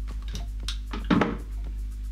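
Background music with a steady beat, and about a second in a single short clatter of metal wire strippers being set down on a wooden workbench.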